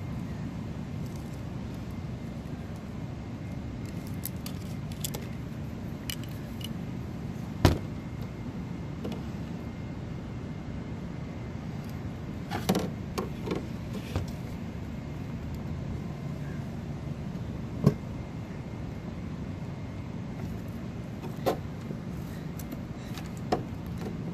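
Hands working wires and spade connectors onto the terminals of an air conditioner's capacitors while fitting a hard-start capacitor. The metal connectors and parts give scattered sharp clicks and small metallic clatters: a loud one about a third of the way in, a quick cluster soon after, then a few more spaced out. A steady low hum runs underneath.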